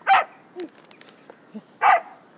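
A collie-type dog barking twice: one sharp bark just after the start and another near the end, about a second and a half apart.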